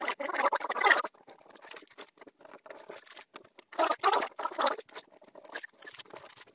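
Blue painter's tape being laid across thin wood strips and rubbed down by hand: scratchy rustling, loudest during the first second and again about four seconds in, with fainter scratching between.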